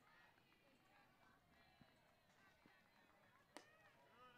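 Near silence of faint ballfield ambience, broken about three and a half seconds in by a single short pop: a pitched softball landing in the catcher's mitt.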